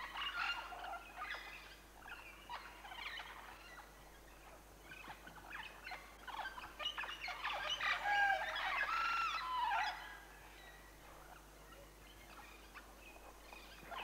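Montezuma oropendolas calling at their nesting colony: a busy mix of chattering, clicking and whistled notes, with gurgling, gliding calls loudest around the middle, then dying down to fainter calls.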